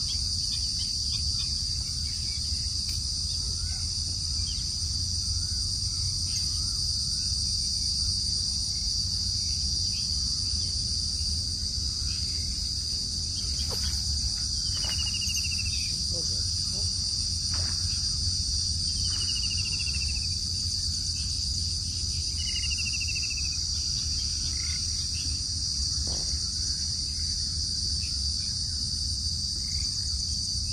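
A steady, high-pitched chorus of insects, crickets or similar, droning without a break over a low rumble. Three short falling whistled calls, typical of a bird, come in the second half.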